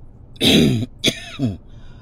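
A man clearing his throat twice in quick succession, each sound falling in pitch.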